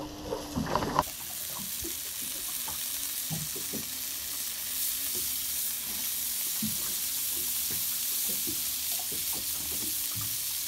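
Fish fillets frying in a pan: a steady sizzle with small pops. In the first second there are a few clicks as tongs turn the fillets in the pan.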